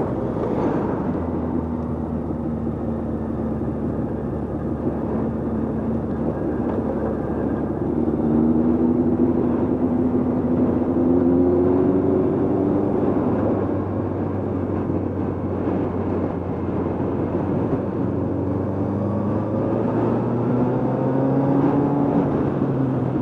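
Motorcycle engine running under way, its note rising as the bike accelerates about eight seconds in and again near the end, with rushing wind noise.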